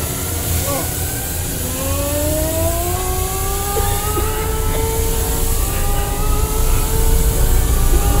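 A couple of short frightened cries, then a deep rumble with hiss under a long tone that slowly rises in pitch as the genie emerges from the smoke.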